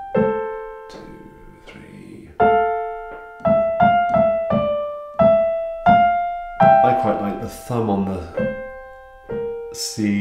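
Piano playing a smooth, lyrical passage: a chord struck and left to ring, then melody notes about two a second over a lower accompaniment, each note dying away after it is struck.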